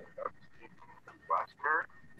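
Four short, high-pitched, wavering whining cries, heard as two pairs, a few of them picked up over a video-call microphone. Under them runs a faint steady high whistle of audio feedback.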